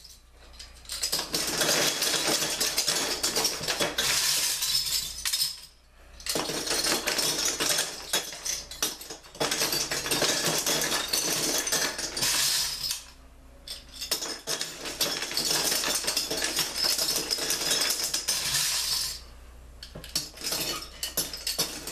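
Metal bottle caps dropping through the top slot of a glass-fronted shadow box and clattering onto the pile of caps inside. They come in long runs of rapid clinking, broken by a few short pauses.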